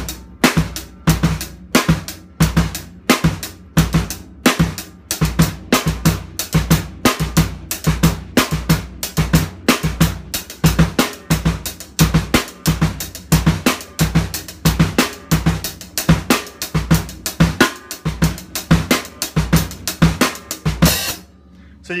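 Drum kit groove: triple-stroke sixteenth notes on the hi-hat with the snare on two and four, while the bass drum plays a pair of sixteenth-note positions that shifts every couple of measures. The playing stops about a second before the end.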